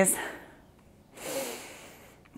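A woman's audible breath, lasting about a second and starting about a second in, taken while holding a high lunge.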